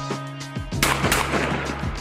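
A single shot from a Stevens 555 12-gauge over-under shotgun, a little under a second in, dying away over about a second, over background music.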